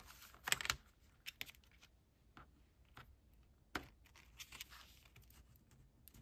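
Faint handling of a glued heavy-paper pocket envelope: the card is squeezed and pressed down by hand, giving light rustles and a scattering of sharp clicks and taps. The loudest comes about half a second in, with another a little before the 4-second mark.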